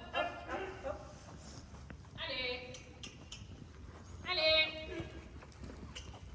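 Hoofbeats of a horse walking on the sand footing of an indoor riding arena, soft and uneven. Three short, high, wavering voice-like calls cut across them, the loudest about four and a half seconds in.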